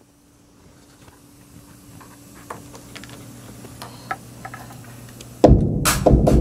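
Faint steady hum with a few small clicks, then a loud hip-hop beat starts playing suddenly about five and a half seconds in.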